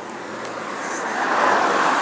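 A car passing on the road, its tyre and engine rush swelling steadily louder as it approaches.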